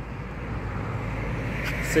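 Steady low hum of street traffic, a little louder toward the end, as a man's voice begins.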